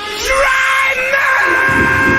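A rock song's lead vocal holding one long, high, screamed note over the music. Drums and bass come back in about one and a half seconds in.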